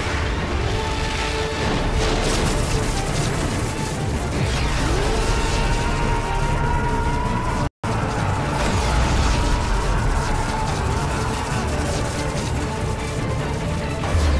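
Dramatic orchestral TV score mixed with deep rumbling and crashing effects of burning debris and explosions. The whole soundtrack cuts out for an instant about halfway through.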